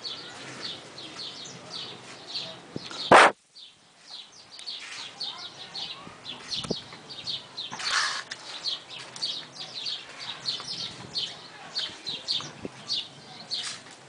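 Small birds chirping in quick, repeated high notes, about three a second, throughout. A single loud sharp click cuts in about three seconds in.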